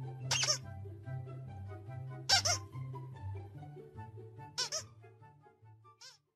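A squeaky plush dog toy squeaks three times, about two seconds apart, each squeak short and shrill, over background music with a steady bass line.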